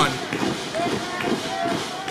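Faint voices and murmur from a small audience, below the level of the commentary.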